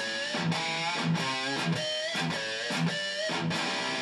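Electric guitar played through a Blackstar HT60 valve combo amp at very low volume: a lead line of picked single notes, several bent up in pitch and held with vibrato.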